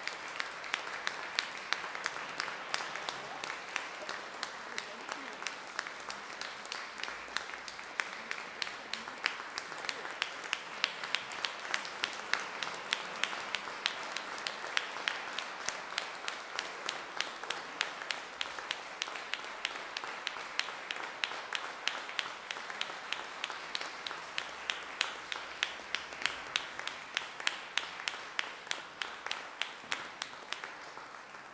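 Audience applauding steadily for the whole stretch, with one nearby pair of hands clapping louder and fairly evenly above the rest.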